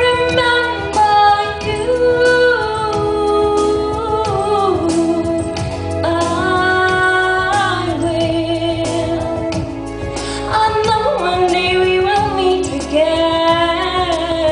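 A woman singing into a handheld microphone over instrumental backing music, holding long notes, some with vibrato, against a steady beat.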